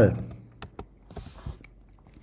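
Computer keyboard being typed on: a handful of separate key clicks spread across two seconds.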